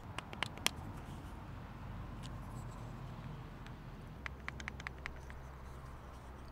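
Small handcrafted wooden puzzle box being handled: a few light clicks and taps of wooden parts at the start, and a quick cluster of them about four seconds in, over a low steady background rumble.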